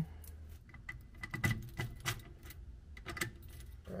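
A bunch of keys on a ring jangling, with light metallic clicks, as a key is put into a keyed ignition lock.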